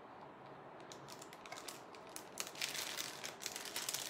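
Quick small clicks and crinkling rustles from a beaded necklace being handled and taken out of its packaging. They start about a second in and grow busier toward the end.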